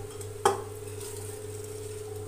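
A metal bowl knocks once against an aluminium pressure cooker about half a second in, then soaked basmati rice slides quietly into the pot over a steady low hum.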